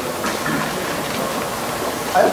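Steady room noise of a large hall with a faint murmur of voices from the audience.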